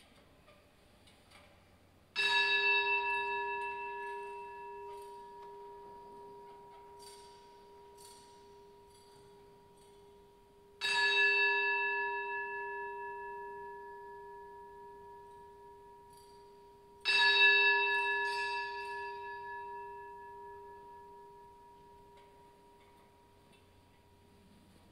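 A single church bell struck three times, about two, eleven and seventeen seconds in, each stroke ringing on and slowly fading. The bell marks the blessing with the Blessed Sacrament in the monstrance.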